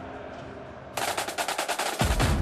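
A steady stadium background hum, then, about a second in, a loud rapid rattling burst of sharp strikes, about ten a second: the broadcast's transition sound effect leading into the goals graphic.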